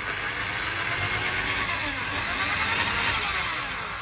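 Electric drill boring a small pilot hole into a wooden guitar headstock for a tuning machine's locating pin. The motor whine rises in pitch and then falls away, stopping just before the end.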